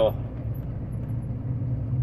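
Semi-truck engine droning steadily while driving, heard from inside the cab, with road noise.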